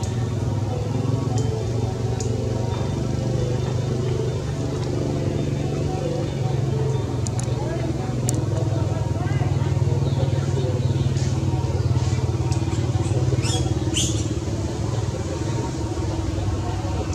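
A steady low motor hum runs throughout, with indistinct voices. A few short, high squeaks come near the end.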